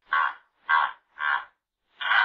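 Hippopotamus calls: three short calls about half a second apart, with a longer call starting right at the end.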